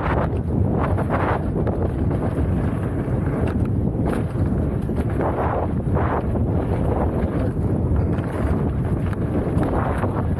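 Wind rushing over an action camera's microphone as a mountain bike rides fast down a dirt jump trail, with tyres crunching on dirt and the bike rattling over bumps. The rush swells briefly every second or few.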